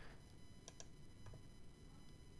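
Near silence: room tone with two faint computer-mouse clicks in quick succession, a little before the middle.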